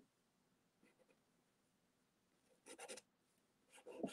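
Faint scratching of a pastel stick drawn across toned paper, with a few short strokes close together about three seconds in and another near the end. Otherwise near silence.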